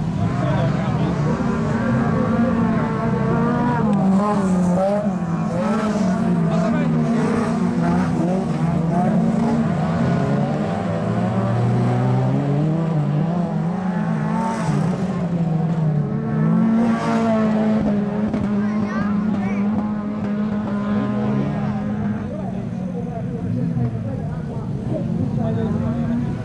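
Several standard-class autocross cars racing together on a dirt track. Their engines rev up and down over one another through gear changes, and there are brief harsher flares twice in the second half.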